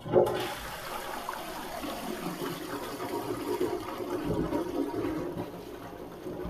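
Flush water from a concealed Metropole flush valve, opened to full release and held pressed, rushing steadily into a ceramic Indian squat pan (Odisha pan). It is a full-flow test flush to check the flush inlet and waste outlet joints for leaks.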